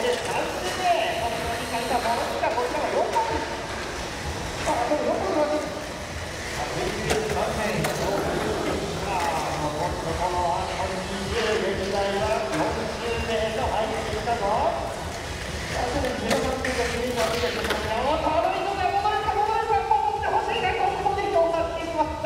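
Speech that runs almost without pause over the steady noise of a busy hall, with a few sharp clicks.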